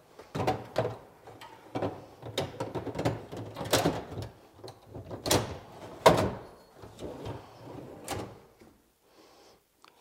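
IKEA Maximera hidden drawer being set onto its runners and slid in and out of the cabinet: a run of clacks and knocks with short sliding scrapes, loudest about five and six seconds in, dying away near the end.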